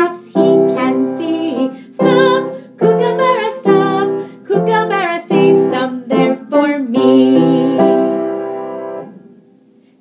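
A woman singing a children's song to her own upright piano accompaniment. The song ends on a held piano chord that fades out about two seconds before the end.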